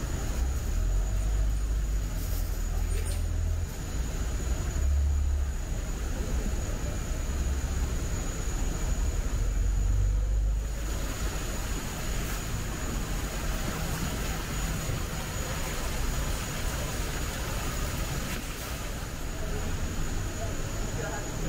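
Steady background hiss and hum of an enclosed indoor space, with a thin high steady tone over it and a low rumble that eases off about eleven seconds in.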